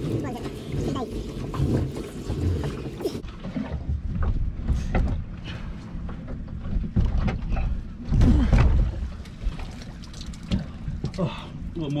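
Wind rumbling on the microphone aboard a small open motorboat, with scattered knocks and rattles as crab pots are hauled and handled over the side. The rumble swells louder about eight seconds in.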